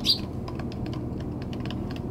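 Eurasian tree sparrows pecking grain off a wooden feeder tray: irregular sharp taps, several a second. There is one short loud chirp right at the start, over a steady low hum.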